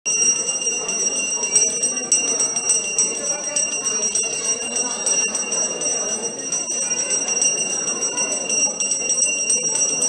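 Temple bells ringing without pause, a steady high ringing, over a murmur of many voices.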